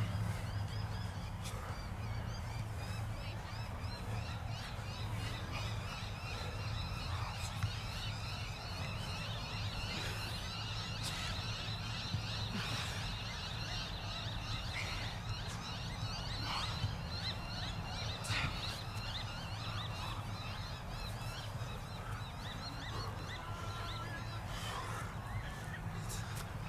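Many birds chattering and calling at once in a dense, continuous chorus, over a steady low rumble.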